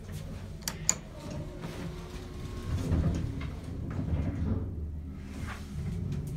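1970s U.S. Elevator hydraulic elevator heard from inside the car: two sharp clicks just under a second in, then a low rumble that builds from about two seconds in with the sound of the sliding door.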